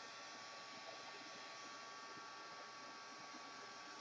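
Faint, steady hiss of a craft heat tool blowing hot air to dry a wet, inked paper tag.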